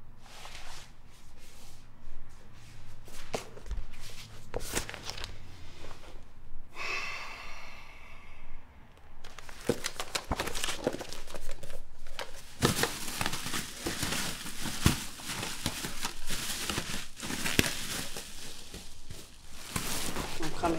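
Paper crinkling and rustling as it is handled, with scattered light clicks and knocks; the handling grows busier and louder about ten seconds in.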